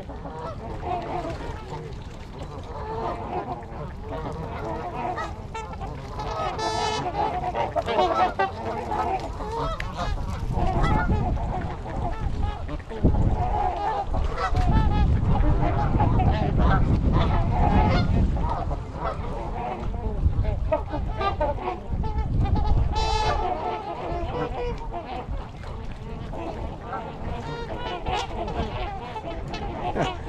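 A flock of Canada geese and trumpeter swans honking and calling over one another, call after call without a break. Through the middle a low rumble swells up under the calls and is the loudest part.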